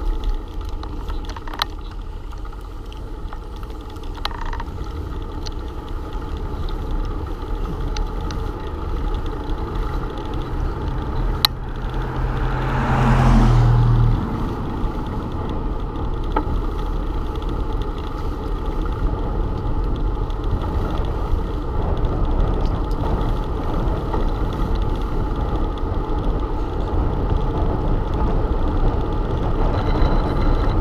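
Steady rush of riding a bicycle on asphalt, heard from a camera on the moving bike: wind on the microphone and tyre noise, with a few light clicks. About twelve seconds in, a louder swell with a low hum rises and fades over two seconds.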